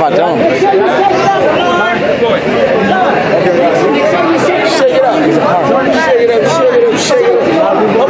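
Several men talking over one another: a babble of overlapping voices with no single speaker clear.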